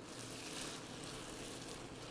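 Faint steady hiss of cellophane noodles and chicken stock heating in a stainless steel sauté pan.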